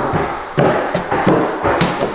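Footsteps knocking on the floor, a few irregular strides, with loud rustling from a handheld phone camera jostled against clothing as it is carried.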